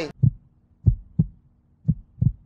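Heartbeat sound effect for suspense: low, muffled double thumps, lub-dub, about once a second.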